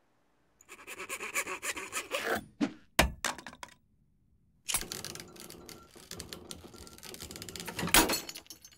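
Cartoon sound effects of saws and cutting tools grinding and scraping on metal in two long stretches, with one sharp crash about three seconds in. The tools break against the Omnitrix without marking it.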